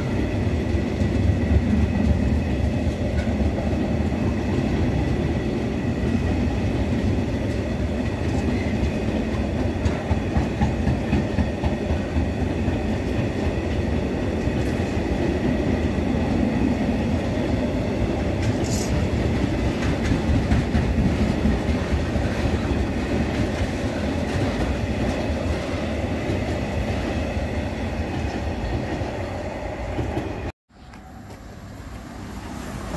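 Loaded container flat wagons of a long freight train rolling steadily past at close range: a continuous low rumble of wheels on rail with scattered clicks.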